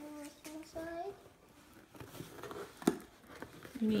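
A young child's voice briefly at the start, then scratching and tearing at a cardboard box's packing tape and flap, with a few sharp clicks, the loudest a little before three seconds in.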